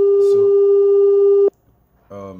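WhatsApp outgoing video-call ringing tone: a loud, steady, single-pitched tone that cuts off suddenly about a second and a half in, as the call is answered.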